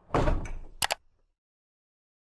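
Logo intro sound effect: a short swoosh followed by two quick sharp clicks a little under a second in.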